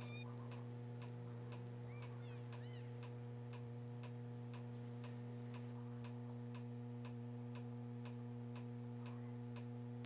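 Faint, regular ticking about twice a second, like a clock, over a steady low electrical hum.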